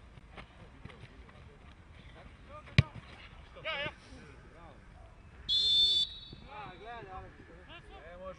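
Football players shouting on the pitch, with a single sharp thump about three seconds in. A referee's whistle blows once, briefly, about five and a half seconds in.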